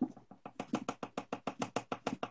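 Pen scribbling fast on paper, a quick even run of strokes about nine a second.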